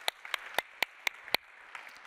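Audience applauding, with one pair of hands close by clapping sharply about four times a second until about a second and a half in, over the softer clapping of the rest of the room.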